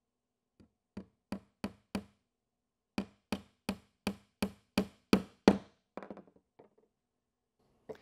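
Hammer driving a three-quarter-inch nail through the wooden end bar into the bottom bar of a Langstroth beehive frame: four light taps to start the nail, a short pause, then about nine harder strikes at roughly three a second that grow louder, ending in a few faint taps.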